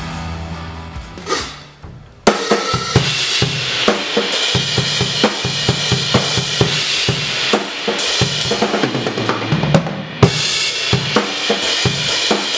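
Infinity Drumworks custom drum kit (maple/mahogany toms and kick, gumwood snare, Dream Bliss cymbals) played hard, coming in suddenly about two seconds in with kick, snare and cymbals. A brief drop just before ten seconds is followed by a loud crash.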